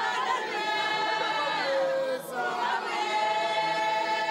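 Zion church congregation singing together in chorus, many voices holding long notes that slide from one pitch to the next, with a brief dip about two seconds in.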